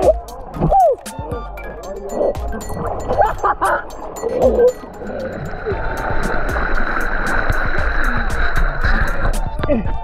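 Background music with a steady beat over water gurgling at the lens as an electric underwater sea scooter dips below the surface; from about halfway a steady high whine with a hiss comes in, the scooter's motor heard with the camera partly under water, and stops just before the end.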